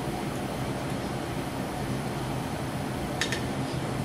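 Steady fan-like whir in a small room, with one short metallic scrape near the end as a steel journal scratch hook touches a tin can.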